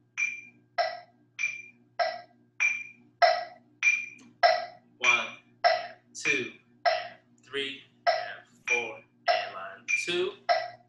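Metronome clicking a steady beat at about 100 beats a minute, each click ringing briefly, set as the tempo for a snare-drum check-pattern exercise.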